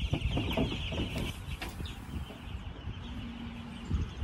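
A brooder full of chicks about two weeks old peeping continuously in a dense high-pitched chorus that fades out about halfway through.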